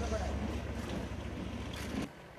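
Low steady rumble of wind on the microphone, with faint voices in the background.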